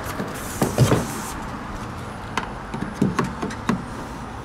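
Tesla Supercharger connector handled: a cluster of knocks as it comes off the post about a second in, then a few sharp plastic clicks and taps as it is pushed into the Model S charge port near the end.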